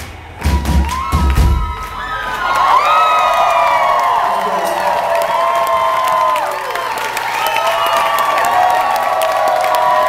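A rock band's last two low hits end the song, then a concert crowd cheers and whoops, many voices overlapping, from about two seconds in.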